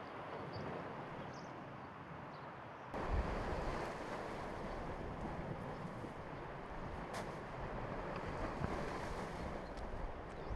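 A steady outdoor hiss, then from about three seconds in a louder rumble of wind on the microphone over the wash of lake waves on a rocky shore, with one sharp click about seven seconds in.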